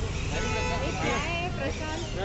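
People talking in the background over a steady low rumble of street traffic.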